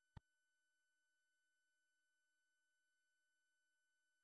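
Near silence, with one brief faint click just after the start.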